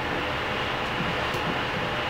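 Steady background noise, an even hiss with a low rumble, with a faint tick about two-thirds of the way through.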